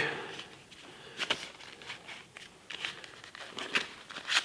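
Faint, scattered clicks and light rustles of hands handling a plastic-bodied cordless screwdriver and its plastic packaging.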